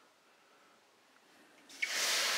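Near silence, then close to the end a sudden loud sizzle and hiss as a liquid mix of soy sauce, mirin and rice vinegar is poured into a hot steel pan.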